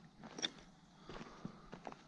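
Footsteps on dry dirt and leaf litter: a few faint, irregular crunches and scuffs.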